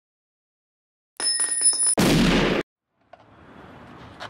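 Brass cartridge casings clinking with a high metallic ring, a rapid run of clinks lasting under a second. They are followed at once by a short, loud blast that cuts off suddenly, then faint outdoor ambience with small clicks near the end.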